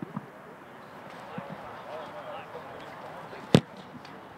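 A football kicked off a hold for a field goal: one sharp, loud thud of foot on ball about three and a half seconds in. Faint distant voices run underneath, with a couple of light knocks at the start.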